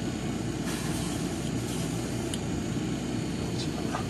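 Steady low running hum of a hobby paint spray booth's exhaust fan, with a brief faint hiss about a second in and a couple of light ticks.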